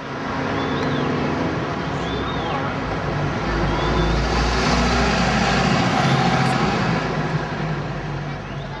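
Street traffic noise: a steady wash of passing vehicles, with a heavy engine rumbling past in the middle. Three short high squeaks sound in the first few seconds.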